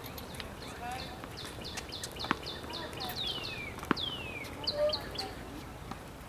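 A songbird singing: a quick run of short, high repeated notes, then two long falling whistles and a few short notes near the end. Two sharp knocks cut in, one at about two seconds and one at about four, with faint voices underneath.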